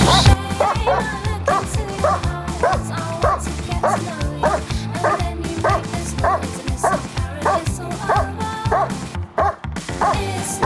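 German Shepherd barking steadily and rhythmically at a helper in a hiding blind, about two to three barks a second with a brief pause near the end: the bark-and-hold of protection training, where the dog guards the cornered helper by barking instead of biting. Background music plays underneath.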